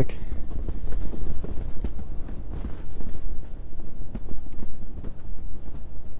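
Gusty wind buffeting the microphone, a low rumble that rises and falls unevenly, with a few faint ticks.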